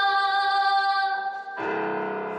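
A woman singing one long held note to grand piano accompaniment; about a second and a half in the note ends and a fuller, deeper piano chord sounds.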